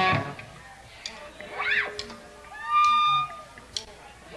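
An electric guitar chord rings out and cuts off just after the start, leaving a lull in a live recording. A faint short gliding tone follows, then a brief held guitar tone about three seconds in.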